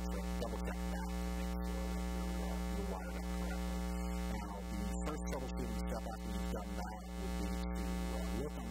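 Steady electrical mains hum with a dense stack of overtones, strongest at the bottom.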